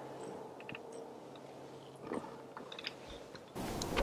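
Faint, scattered small clicks and ticks over a low steady hum. About three and a half seconds in, a louder steady rush of outdoor noise cuts in suddenly.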